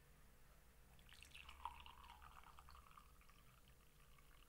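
Near silence: faint room tone, with a very faint, indistinct sound between about one and three seconds in.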